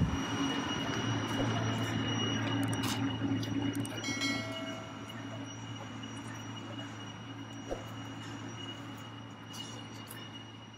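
Steady low mechanical hum with a faint high whine above it, fading slowly, with an odd faint click.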